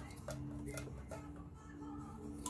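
Faint small clicks and rustles of thread being pulled and handled at a sewing machine's needle and presser foot, over a steady low hum.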